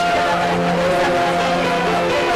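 Worship music: singers holding long, slow notes over electric guitar accompaniment.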